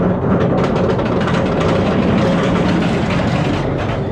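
Steel roller coaster train running along its track at speed: a loud, steady rumble.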